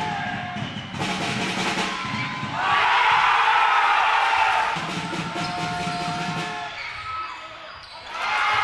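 Basketball game sound with music playing: a ball bouncing on a hardwood court, and a louder stretch of crowd noise from about two and a half to nearly five seconds in.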